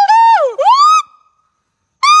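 Gibbon calling its territorial song: two loud hoots in the first second, each sweeping up and down in pitch, the second ending on a rising note.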